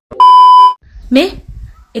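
A loud, steady 1 kHz test-tone beep of the kind played over TV colour bars, lasting about half a second. About a second in it is followed by a short rising voice-like sound.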